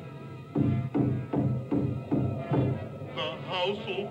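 Suspenseful film-score music from an animated film's soundtrack, heard through a TV's speakers in a room: a run of low, evenly repeated beats, about three a second. A voice begins near the end.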